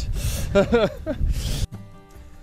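A man's short breathy laugh and voice over low wind rumble on the microphone out on the water. Near the end it cuts suddenly to quiet background music with held notes.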